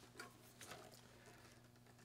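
Near silence: a faint steady low hum with two or three soft knocks from a solid-body electric guitar being handled and put away.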